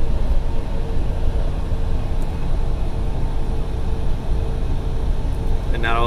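Steady in-cab drone of a Freightliner Cascadia semi-truck cruising at about 65 mph in 12th gear on its automated transmission: engine and road rumble with a faint steady hum over it.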